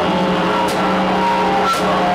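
Electronic synthesizer drones played live: several held tones at once, some sliding in pitch, over a sharp tick that repeats about once a second.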